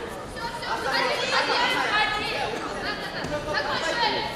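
Several people's voices talking and calling out over one another: chatter from the people in the hall.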